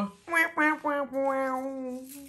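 A woman's voice vocalising in a sing-song way: a few short notes, then one long held note from about a second in, in disappointment at a losing scratch card.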